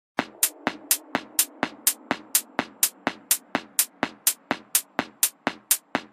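Intro of an electronic dance track: a drum machine's sharp percussive hit repeating on a steady beat, about four a second, over a faint low synth layer that fades away.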